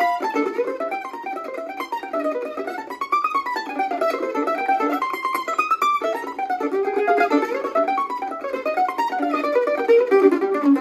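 Gilchrist F-style mandolin played solo: a bluegrass fiddle tune flatpicked in fast single-note runs that climb and fall in pitch.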